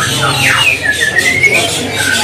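Small cage birds chirping: a quick downward-sweeping call about half a second in, then a short run of rising notes, over a background of chatter.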